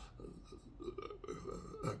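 A man's faint, low, creaky vocal sound as he hesitates mid-sentence, searching for a word, ending in a short spoken 'a'.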